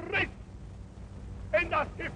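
A man shouting a speech in a high, strained voice: a short shouted word right at the start, a lull, then another shouted phrase from about three-quarters of the way in. A steady low hum runs underneath.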